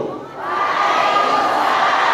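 Many men's voices of a seated congregation sounding together, a dense crowd sound that starts about half a second in after a brief lull.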